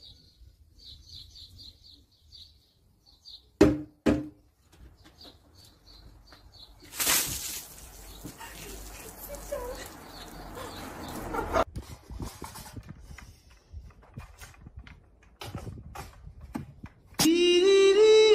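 Birds chirping in short repeated calls, then two sharp knocks about four seconds in. About seven seconds in, a loud rushing noise starts, lasts about four seconds and cuts off suddenly; it is followed by scattered clicks. Near the end, loud music begins.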